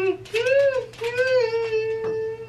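A person humming a melody in a high voice: a rising note, a short swell, then a long held note from about a second in.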